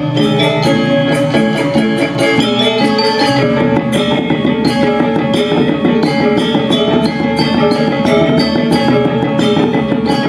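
Balinese gamelan playing dance music: bronze metallophones struck in fast, dense figures over drums, with sharper accented high strokes joining at a steady beat about four seconds in.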